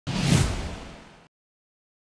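Broadcaster's logo-sting sound effect: a whoosh with a low boom under it. It starts suddenly, peaks a moment in and fades away over about a second.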